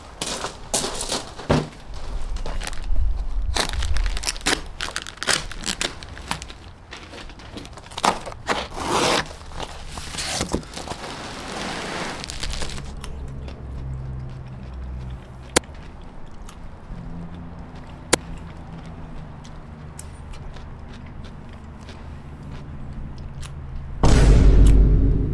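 Cardboard box and plastic wrap being handled and opened: crinkling, scraping and tearing, busiest in the first half, then quieter with a few sharp clicks.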